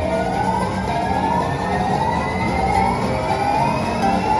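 Aristocrat Dragon Link slot machine playing its hold-and-spin bonus sounds as the bonus reels spin: a long tone climbing slowly in pitch, with short upward swoops repeating about every second or so over a low steady hum.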